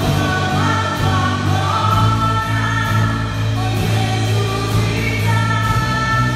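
Live gospel worship music: a woman singing into a microphone with other voices joining, over a band with a steady bass and light percussion.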